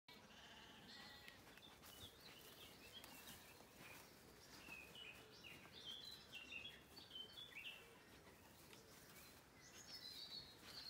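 Faint sheep bleating near the start, then faint birdsong of short, stepping chirps.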